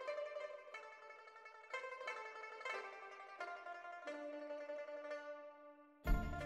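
Quiet background music of a plucked string instrument, single notes picked out about once a second, fading down near the end.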